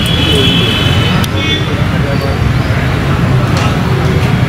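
Steady road traffic noise with indistinct voices mixed in. A thin high tone sounds at the start and briefly again about a second and a half in.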